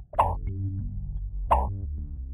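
Two short cartoon pop sound effects, about a second and a half apart, over steady low background music.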